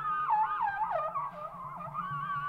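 Trumpet playing a fast, wavering free-jazz line that keeps sliding up and down in pitch, over a low, quickly repeating pulse.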